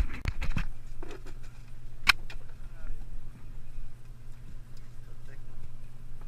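The party boat's motor running with a steady low hum, under faint voices on deck. A few knocks sound right at the start and one sharp click about two seconds in, as the fish and rod are handled.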